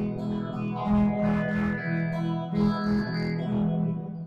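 Two guitars playing a duet together, one a Telecaster-style electric guitar: plucked melody notes over a line of low bass notes.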